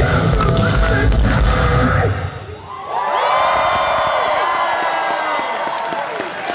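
A metalcore band's live electric guitars, bass and drums play until the song ends about two seconds in; after a short drop, the crowd cheers, with many high screams and whoops.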